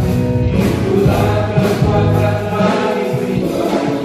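A live church worship band and singers performing an upbeat Indonesian praise song, the voices singing over keyboards and a steady beat.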